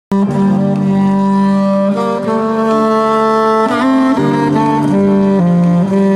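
Saxophone played live: a slow melody of long held notes, one of them wavering in pitch a little before the four-second mark.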